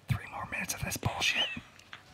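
Soft, breathy laughter and whispered voices from two people.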